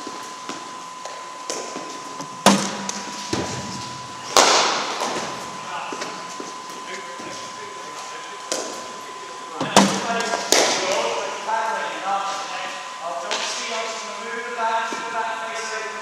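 Sharp knocks of cricket balls being struck and landing, echoing in a large indoor hall: a few loud ones a few seconds apart, the loudest about two and a half and four and a half seconds in and again around ten seconds. Voices talk in the background through the second half.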